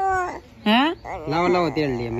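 A toddler's high-pitched, gliding vocal sounds and an adult's drawn-out vocalizing: a quick rising squeal, then a longer wavering call.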